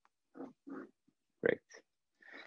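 A man's quiet, short murmurs, then the spoken word "great" about one and a half seconds in.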